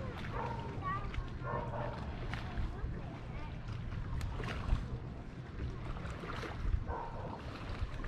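Faint voices of people talking at a distance over a steady low rumble of wind on the microphone.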